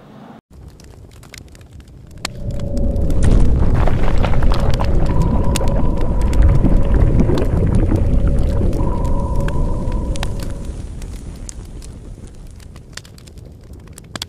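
Cinematic logo-reveal sound effect: a deep rumble with crackling clicks swells up about two seconds in, with two steady tones held over it, then slowly fades out.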